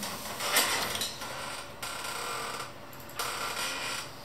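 Handling noise as the stainless steel camera head is screwed onto the threaded end of a sewer inspection camera's push cable: a rustle about half a second in, then three short stretches of scraping as the head is turned.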